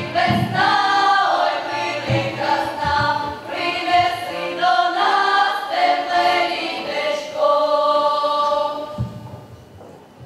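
Girls' folk choir singing a Ukrainian folk song in full voice, ending on a long held note that fades away near the end.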